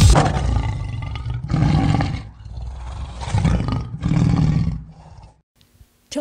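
A lion roaring as a sound effect: one long roar that fades away, then three shorter roaring grunts, ending about five seconds in.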